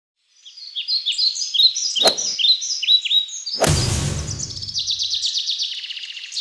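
Birds chirping in quick, repeated falling notes. A sharp click comes about two seconds in, and a whoosh with a low thump comes just past the middle. After that the chirps run together into a fast trill.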